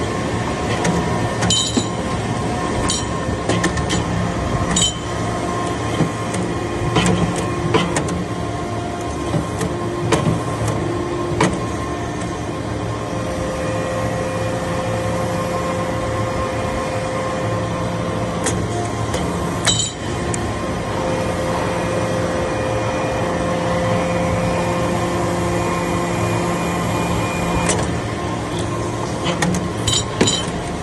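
Hydraulic vertical briquetting press compacting copper chips: its hydraulic power unit hums steadily, and a higher note comes in twice for several seconds as the press builds pressure. Short metallic clicks and clinks sound now and then.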